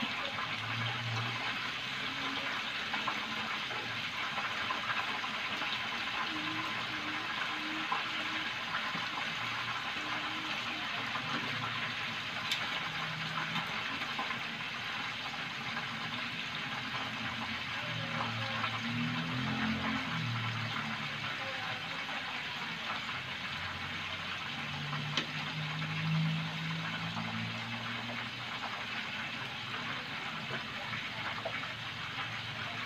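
Tofu frying in a pan of hot oil: a steady sizzle, with a couple of light clicks of the tongs against the pan.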